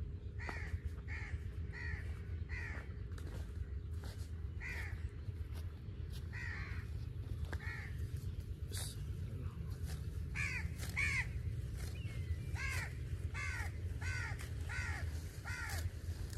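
A crow cawing over and over in short runs of calls, thickest in the second half, over a steady low rumble.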